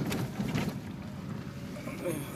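Car driving slowly on a narrow lane, heard inside the cabin: a steady low rumble of engine and tyres, with a couple of brief knocks near the start.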